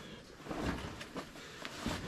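Faint rustling with a few soft, scattered knocks as a backpack is swung back on and its straps settled.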